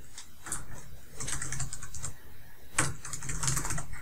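Typing on a Bloomberg terminal keyboard, entering personal details into form fields: two runs of quick key clicks, one about a second in and a longer one near the end.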